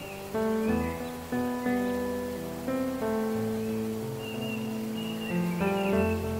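Gentle instrumental relaxation music: single notes struck and left to ring, changing about every second, over a soft, steady, water-like rushing.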